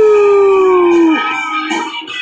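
A man's wordless howl: one long note that swoops up sharply, then slides slowly down in pitch and breaks off about a second in, followed by a rock backing track with piano and guitar.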